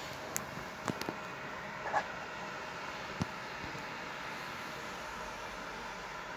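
Steady, even whirring of a cooling fan running, with a few faint clicks and knocks in the first three seconds.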